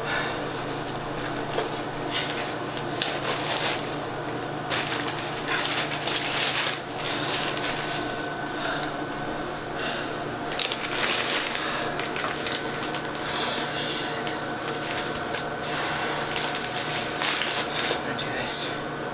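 Brown paper bag being handled and crinkled: irregular crackling rustles, some louder than others, throughout.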